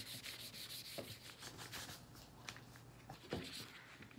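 Faint, scratchy rubbing of frozen food-colouring ice cubes scrubbed back and forth across paper, with a few light taps.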